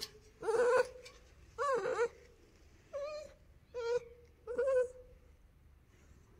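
Belgian Malinois puppy whining: five short, high-pitched cries, about one a second.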